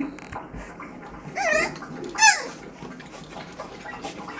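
A puppy gives two short, high-pitched yelps during play, about a second and a half and two and a quarter seconds in, the second sliding down in pitch.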